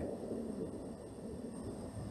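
Quiet room tone: a faint, even low background noise with no distinct sound.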